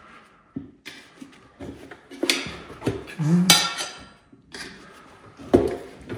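Steel tire irons clinking and scraping against a dirt-bike wheel's rim as a bead-lock insert is worked in under the tire bead: a series of sharp metallic clinks, the loudest about three and a half seconds in.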